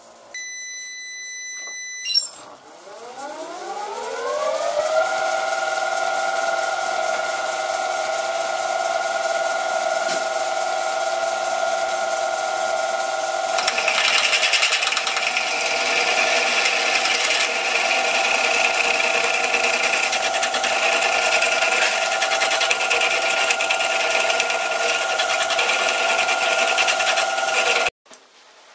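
A short steady beep, then a metal lathe's spindle motor spinning up with a rising whine that settles into a steady running tone. From about halfway a twist drill in the drill chuck cuts into a steel block, adding a rough hissing cutting noise over the motor's whine.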